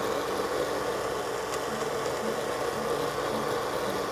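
Countertop blender running steadily on low speed, blending onion soup.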